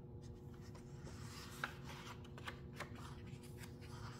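A hardcover picture book's page being turned by hand: faint paper rustling and a few soft taps over a steady room hum.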